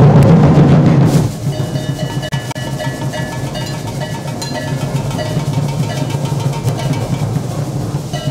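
A group drumming together on a red marching bass drum, hand drums and upturned metal buckets struck with sticks. It starts loudest in about the first second, then settles into a dense, steady beat.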